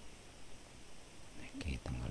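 Quiet room tone, then a man's low, mumbled speech starting about a second and a half in.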